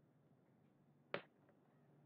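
Near silence with a low steady hum, broken about a second in by a single short, sharp click.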